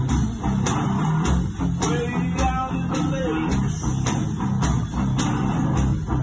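One-man band playing blues on electric guitar, with a low bass line, over a steady drum beat from a kick drum, with no singing.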